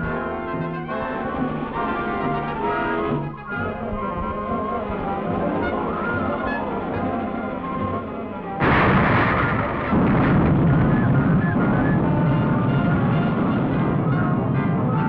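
Dramatic orchestral film score with brass and timpani. About eight and a half seconds in, a loud dynamite blast set off by a plunger detonator hits, and its rumble carries on under the music.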